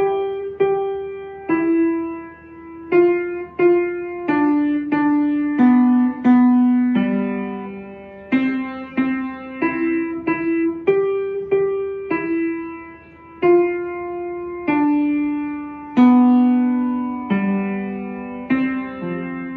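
Upright piano played solo: a slow melody of separate struck notes and chords, each ringing and fading before the next.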